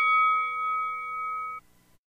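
A struck bell ringing on and slowly fading, then cut off abruptly about one and a half seconds in.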